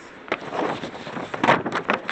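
A sheet of paper rustling and crinkling in the hands, with irregular crackles that are loudest about a second and a half in, as it is brought to the inked gel plate to pull a print.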